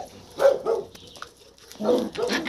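Puppies at play, with a short bark about half a second in.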